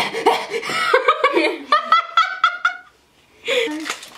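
A young woman laughing: a run of quick, high-pitched laughs that breaks off about three seconds in, with her voice coming back near the end.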